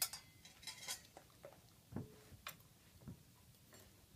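Faint, scattered light clicks and taps from a dog working around stainless steel bowls, with one knock about halfway through that rings briefly like metal.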